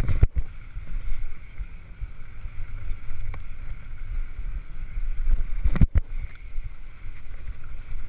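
Mountain bike rolling fast down a dirt singletrack, heard from a camera on the rider: wind buffeting the microphone and a steady rumble of tyres on dirt, with the bike rattling over the trail. Two sharp knocks stand out, one right at the start and one about six seconds in.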